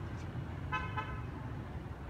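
A single short vehicle horn toot about three-quarters of a second in, over a steady low hum of street traffic.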